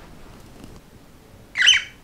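Cockatiel giving one short, high-pitched squawk near the end.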